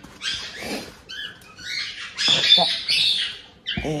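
Cockatiel and white-bellied caique chicks giving short, raspy squawking calls, loudest a little past the middle. Sheets of paper rustle as they are handled.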